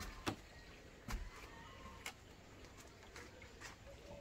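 Faint background with two short clicks, about a quarter second in and about a second in, then a few weaker ticks.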